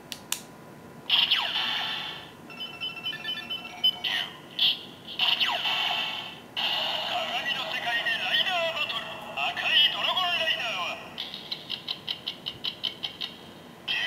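DX Kamen Rider Ryuki Ridewatch toy playing its electronic voice calls and sound effects through its small, tinny speaker while lit up. There are several separate bursts, one stretch of beeping tones and a longer passage, then a quick run of short beeps near the end.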